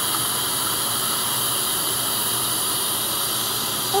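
Dental suction tip running: a steady, even hiss of air being drawn in.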